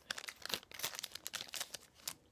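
Plastic packaging crinkling and rustling as it is handled, a dense run of irregular crackles.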